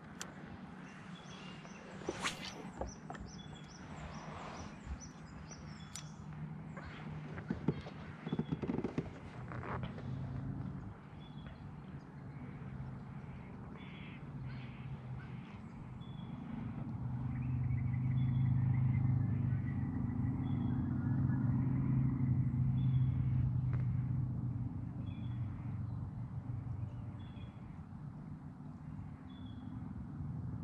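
A distant engine drone rises and falls over several seconds in the middle. A bird's short, high chirp repeats about every second and a half. A few clicks and knocks come in the first ten seconds.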